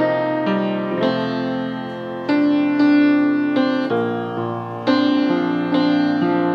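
Grand piano played solo: slow, full chords struck one after another, each left to ring and fade before the next.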